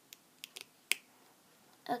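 Computer mouse button clicking a few times, with one sharper click about a second in.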